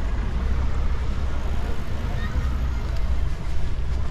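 Steady low rumble of outdoor city ambience, with no distinct events.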